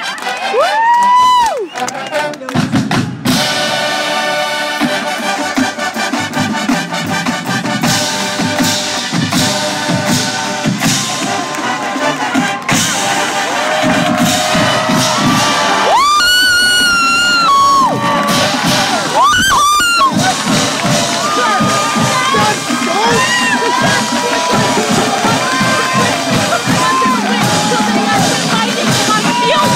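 Drum and bugle corps brass holding a long full chord, with crowd cheering; after the chord ends, the crowd cheers loudly with whoops and whistles.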